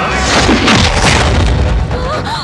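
Film fight-scene sound effect: a loud booming hit about a third of a second in, with a falling sweep after it, over dramatic background music.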